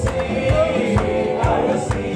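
A group of voices singing a gospel worship song together, amplified through microphones, over a band with a steady drum beat of about two beats a second.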